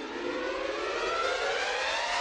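Opera orchestra playing a rising, swelling passage: many pitches climb slowly together while the music grows louder, with no singing.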